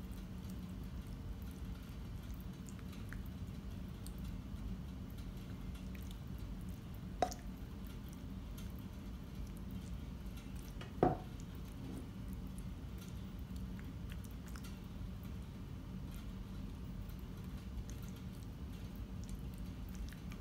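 Faint soft squishing of sauced penne pasta being scooped with a silicone spoon from a pan into a glass baking dish and spread out, over a steady low hum. Two brief knocks, a few seconds apart, are the loudest sounds.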